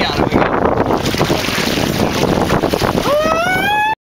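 Wind on the microphone and water splashing against the boat's hull as a hooked bluefin tuna is hauled up at the side. About three seconds in, a person gives a rising whoop, and then the sound cuts off abruptly.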